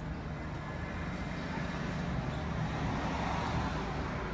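Steady low rumble of road traffic going by in the background, swelling a little about three seconds in.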